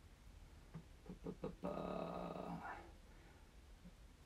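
A man's drawn-out "uhh" hesitation, held for about a second and rising in pitch at the end, after a few soft clicks.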